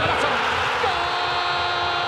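Stadium crowd noise as a goal goes in. About a second in, the TV commentator starts a long drawn-out goal shout, "gooool", held on one steady note.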